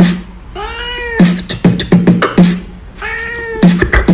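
A cat meowing twice, each a single drawn-out meow that rises and falls, taking turns with a person beatboxing: quick rhythmic mouth clicks and deep thumps between the meows.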